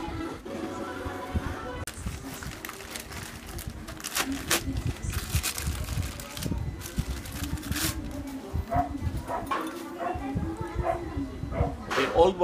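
Plastic parts bag crinkling and rustling in quick bursts as a new clutch part is pulled out of it, with light knocks of metal tools being handled.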